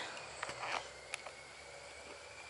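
Faint outdoor ambience: a few soft clicks in the first second and a sharper single click a little after, then a thin, steady high-pitched tone running faintly underneath.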